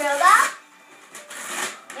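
Wrapping paper tearing and crinkling as a present is ripped open by hand, in short rustling spurts. A voice calls out briefly at the start.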